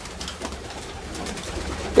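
Racing pigeons moving about in a small loft, with wing flaps and cooing.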